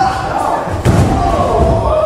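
A wrestler slammed down onto the ring mat: one heavy thud of the ring a little under a second in.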